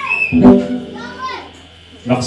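Several voices over the fading end of music, with one sharp thump about half a second in.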